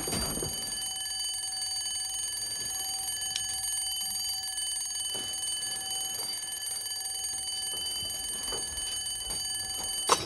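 Bedside alarm clock's bell ringing continuously in one steady tone, stopping near the end as it is switched off.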